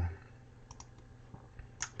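Computer mouse clicking while selecting and dragging a block in a programming editor. Two faint clicks come close together a little under a second in, and a sharper click follows near the end.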